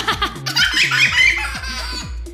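A toddler laughing and giggling in short bursts, over background music.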